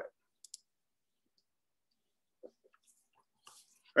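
Near silence broken by a few faint, short clicks: one about half a second in, one a little before two and a half seconds in, and a small cluster about three and a half seconds in.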